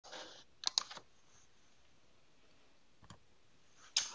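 A short hiss, then three quick sharp clicks under a second in, then quiet room tone with one faint click about three seconds in.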